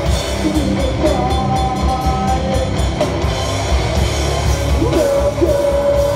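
Metalcore band playing live: loud distorted guitars, bass and drums with vocals, recorded on a phone from the crowd.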